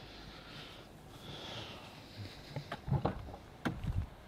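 Faint breathing close by, then a few clicks and low thumps in the last second and a half as the car's door is unlatched and swung open.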